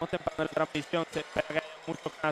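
A man's voice talking, the game commentary continuing.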